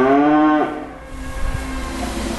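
A cow mooing once: a single call that rises and then falls in pitch and ends less than a second in, followed by quieter background noise.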